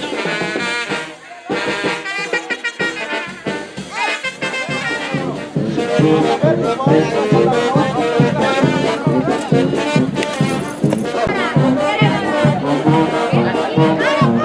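Brass-band music, with trumpets and trombones, playing with a steady beat that grows louder and fuller about five and a half seconds in.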